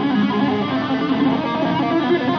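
Amplified electric guitar playing a fast legato run of hammer-on and pull-off notes, many notes a second at a steady loudness.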